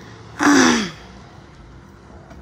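A man's short, breathy exclamation, like a gasp or sigh, about half a second in, its pitch falling as it fades.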